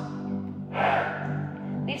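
Background music with steady low tones, and a sharp audible breath from the exercising instructor a little under a second in.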